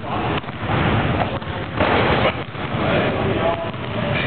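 Rumbling noise from a handheld camera's microphone being moved about, with a louder surge about two seconds in and indistinct voices in the background.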